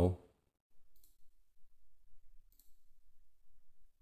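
Faint clicks of a computer mouse button, twice: about a second in and again a little past halfway.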